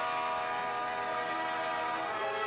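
Orchestral film music: sustained chords of many held notes, with a chord change right at the start.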